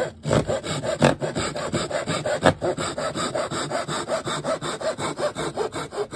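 A handsaw cutting through a round wooden dowel held in a mitre box, in quick, even back-and-forth strokes.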